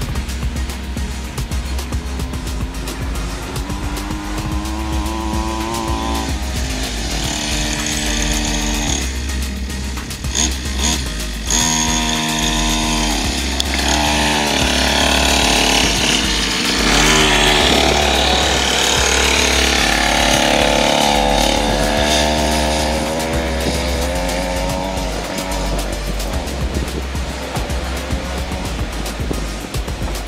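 Small X-PRO 50cc kids' dirt bike engine revving up and down in repeated rises and falls, loudest near the middle as the bike comes close, over background music with a steady bass.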